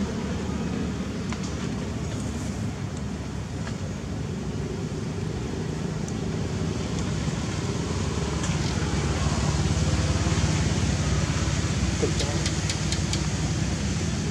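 A steady low motor rumble with voices in the background. A few sharp clicks come near the end.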